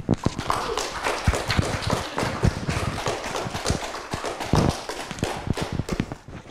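Audience applauding: a dense patter of many hand claps.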